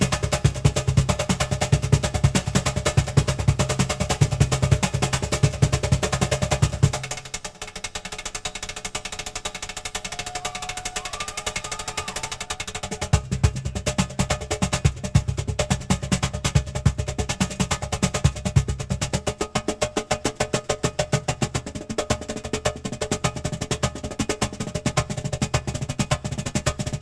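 Cajón played by hand in a fast solo: rapid slaps mixed with deep bass hits. About seven seconds in it drops to lighter, quieter strokes without the bass, then the deep hits come back around thirteen seconds.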